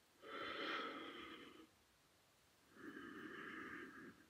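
A woman breathing audibly, two long breaths paced with an abdominal exercise: a louder one just after the start lasting over a second, then a softer one near the end.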